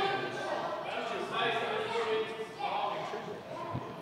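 Faint voices of people talking in the background, echoing in a large hall.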